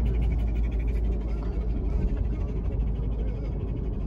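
A dog panting rapidly in quick, even breaths because it is hot, over the steady low rumble of road noise inside a moving car.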